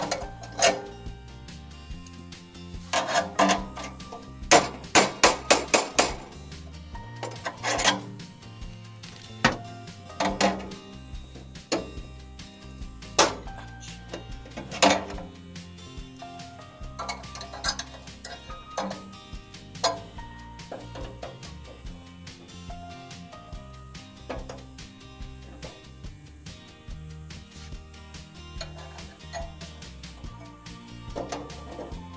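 Sharp, irregular metallic clicks and clanks of pliers and side cutters knocking against a steel meter pedestal box and its pipe, loudest in a quick run of several clicks about five seconds in, over steady background music.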